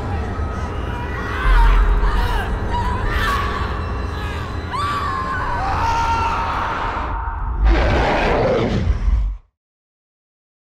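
Horror film score and sound design: a deep rumble under wavering, gliding high tones, swelling into a louder rush near the end and then cutting off suddenly.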